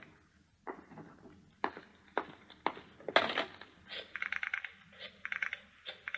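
Telephone sound effects: a handful of separate knocks and clacks, then two short runs of rapid clicking, like a rotary telephone dial being turned, about four and five seconds in.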